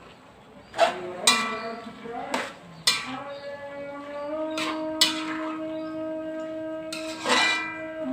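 A metal spatula clanks and scrapes against an aluminium wok as vegetables are stir-fried, about six clanks that each ring on briefly. A steady ringing tone is held for about four seconds in the middle, shifting up slightly in pitch partway through.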